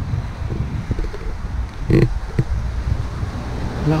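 Wind rumbling on the camera microphone while walking outdoors, with one short sound about halfway through.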